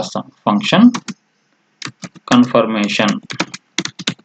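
Typing on a computer keyboard: a run of separate key clicks between spoken words, with a last cluster of keystrokes near the end.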